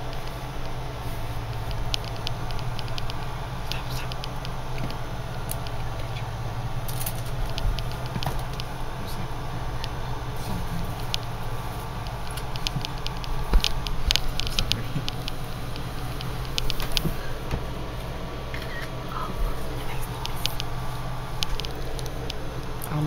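Mother cat licking her newborn kitten: irregular soft wet clicks and smacks from her tongue, over a steady low hum in the room.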